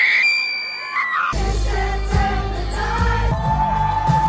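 Live pop concert music with singing, recorded from within the crowd: a high held note, then a heavy bass beat comes in about a second in under the vocal line.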